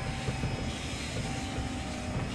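Steady low vehicle rumble heard inside a minivan's cabin.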